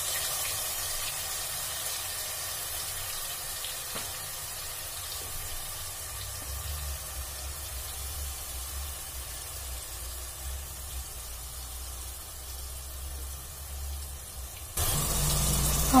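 Hot cooking oil with cumin seeds sizzling faintly and steadily in a pan on a gas stove. Near the end a much louder sizzle starts abruptly.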